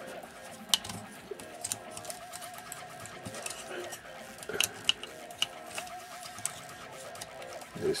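Plastic joints and panels of a Transformers Prime Voyager-class Megatron action figure clicking as its arms are pulled apart during transformation: several short, sharp clicks a second or so apart, over faint background music.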